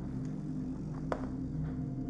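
A steady low hum with one sharp click about a second in.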